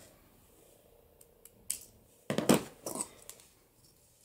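Scissors snipping thin clear blister-pack plastic: a few light ticks, then a sharper, louder cut past the halfway point, followed by a couple of smaller snips.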